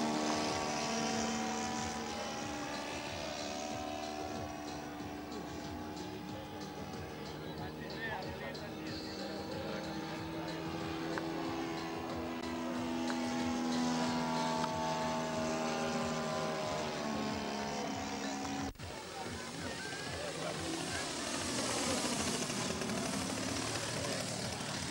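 Two-stroke petrol engine (ZDZ 80) of a large radio-controlled model biplane in flight, its propeller note drifting slowly up and down in pitch as the plane passes overhead. About three-quarters through, the sound breaks off abruptly and comes back as a hissier, brighter engine sound from a low pass.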